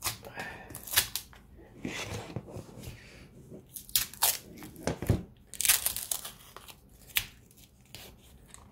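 Green plastic shrink wrap and filament tape being torn and peeled off a battery pack, in irregular bursts of ripping and crinkling.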